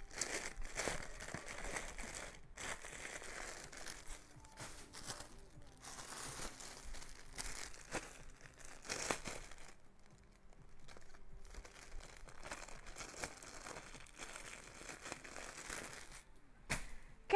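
Clear plastic garment bags crinkling as they are handled, in irregular rustles with a few sharper crackles.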